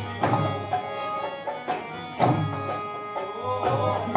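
Live Kashmiri folk music: a held, pitched melody over heavy drum strokes that fall about every two seconds.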